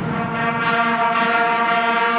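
Concert wind band holding sustained chords, with the brass prominent.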